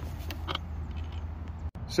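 Steady low outdoor rumble with no clear event in it, cut briefly by a dropout near the end.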